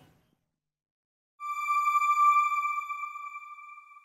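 A single electronic ping: one clear, high, steady tone with overtones that starts suddenly about a second and a half in and fades slowly over nearly three seconds. It is a broadcast transition sting marking the end of the news item.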